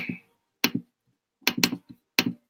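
Clicks from working a computer while trying to dismiss a stuck on-screen message: a single click about two-thirds of a second in, then a quick run of about four clicks near the end.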